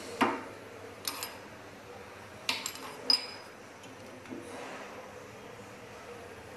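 Manual lever-operated band saw tooth setter being worked: sharp metal clicks and clanks as the lever is pressed to bend the teeth and moved back to advance the blade to the next teeth. About five clanks, the loudest at the start and just after three seconds in, the latter ringing briefly.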